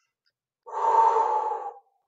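A woman's loud, breathy breath, lasting about a second, in a pause in her speech.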